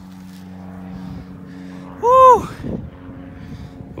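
A man's short whooping cheer about two seconds in, rising then falling in pitch, over a steady low hum.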